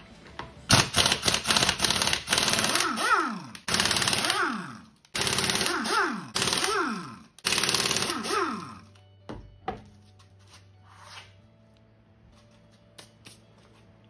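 Air impact wrench hammering on a wheel's lug nuts in four bursts of a couple of seconds each, each ending in a falling whine as the tool spins down. It goes quiet after about nine seconds.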